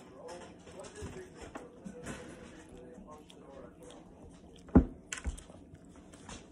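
A small chihuahua licking and chewing wet dog food from a hand, with many small wet clicks. A single sharp knock comes a little before the end, followed by two lighter ones.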